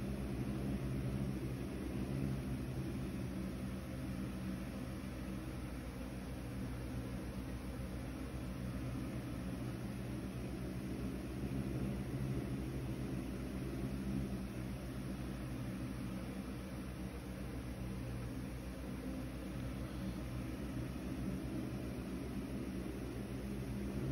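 Steady low hum over an even background noise, with no distinct events.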